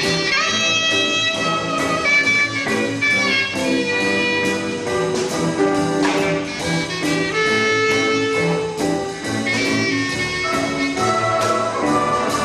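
Student jazz big band playing a swing tune, a clarinet carrying the solo melody over upright bass, guitar and saxophones; the trumpets come in near the end.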